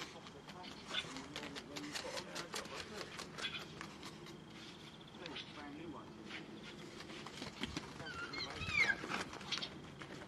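Indistinct background voices with scattered clicks and taps, and a short run of high, squeaky chirps about eight to nine seconds in.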